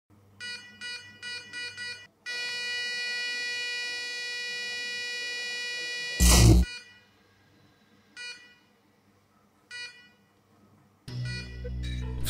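Electronic heart monitor sound: five quick beeps, then a continuous flatline tone for about four seconds, the sign of a stopped heart. A loud thump cuts the tone off, and after a pause single beeps return, slowly, twice. Music swells in near the end.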